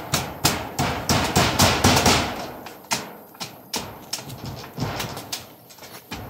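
Hammer blows on a corrugated metal roof being fixed to its bamboo frame: rapid irregular knocks for about two seconds, then slower, spaced strikes.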